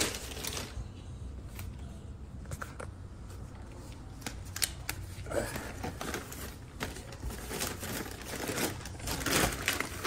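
Thin plastic carry-out bag rustling and crinkling in irregular bursts as things are packed into it and it is handled, busier near the end.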